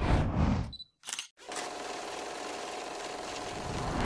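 A short sharp click about a second in, between two moments of dead silence, as at an edit cut. It is followed by a steady even hiss with a faint steady tone under it.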